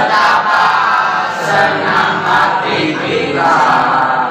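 A group of teenage boys chanting a yel-yel cheer together in unison, loud and continuous.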